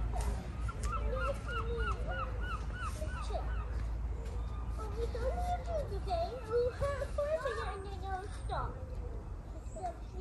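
A bird giving a quick series of honking calls, about three a second, over distant children's voices and a steady rumble of wind on the microphone.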